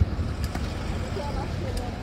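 City street traffic: a steady low rumble of passing vehicles.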